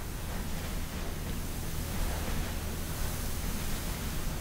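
A cloth being pressed, twisted and rubbed on a carpet sample to blot a red wine stain, heard as a steady, soft scrubbing hiss over a low hum.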